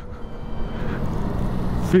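Steady wind and road rush on a moving BMW CE 04 electric scooter, picked up by the rider's helmet microphone; the scooter itself is near silent.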